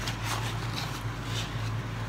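A few soft rustles and scrapes of grocery packaging being handled, over a steady low hum.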